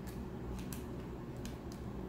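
Tarot cards being shuffled and drawn by hand: a few light, sharp card clicks scattered over a low steady hum.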